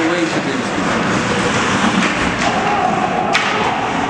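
Ice hockey play in an indoor rink: skates and sticks working along the boards, with a sharp knock against the boards a little over three seconds in. Voices call out over it, one held shout just before the knock.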